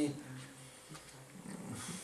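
A man's voice through a microphone ending a phrase right at the start, then a quiet pause holding only a faint low vocal murmur toward the end.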